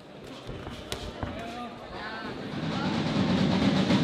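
Two sharp smacks of boxing gloves landing about a second in, then spectators shouting, their noise swelling loud toward the end.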